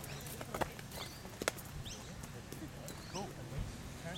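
Outdoor ambience with birds chirping several times in short high calls, and two sharp knocks about half a second and a second and a half in.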